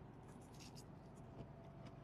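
Near silence with a few faint scratchy ticks: quiet chewing of a crispy deep-fried Brussels sprout.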